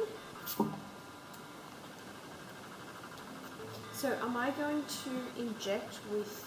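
A few faint clicks from a small paper packet being handled in a quiet room, then a voice for about two seconds starting about four seconds in.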